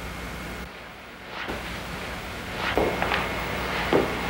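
Steady low hum and hiss of room tone, with a few faint soft knocks or rustles in the second half.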